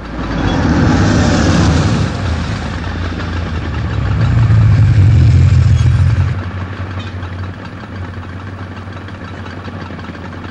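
Vehicle engines in street traffic at a red light, idling and revving; one engine swells louder about four seconds in, then the traffic settles to a steadier, lower running sound.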